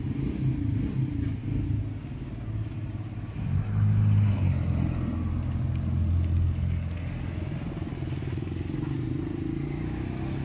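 Low rumble of a running motor vehicle engine, growing louder about three and a half seconds in and easing off after a few seconds.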